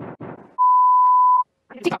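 A loud, steady single-tone censor bleep lasting just under a second, cut in after the fading tail of a voice fragment looped rapidly, about six times a second, in a stutter edit. Speech starts again near the end.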